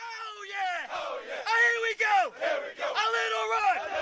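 A group of people shouting together in three long, drawn-out yells, each falling off in pitch at its end.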